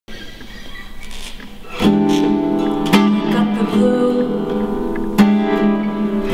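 Acoustic guitar playing the song's opening: a soft start, then strummed chords from about two seconds in, three hard strums each left ringing.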